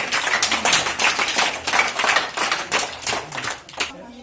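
A group applauding: many hands clapping fast and unevenly, dying away near the end.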